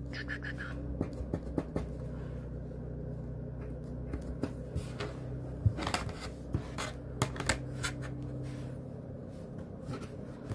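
A marking pencil scratching lines onto batting along a plastic quilting ruler, with scattered clicks and knocks as the ruler is moved and set down on the table. A steady low hum runs underneath.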